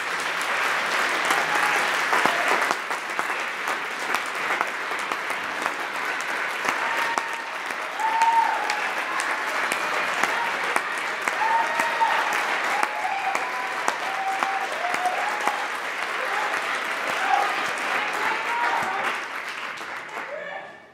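Audience applauding, a steady mass of clapping, with a few voices calling out over it from about seven seconds in.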